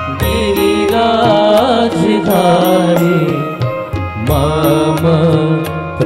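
Devotional bhajan in praise of Shri Giriraj: a voice singing over sustained instrumental tones, with a light regular ticking beat about three times a second.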